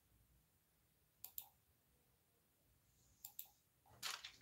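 Two quick pairs of small sharp clicks, about two seconds apart, against near silence in a small room.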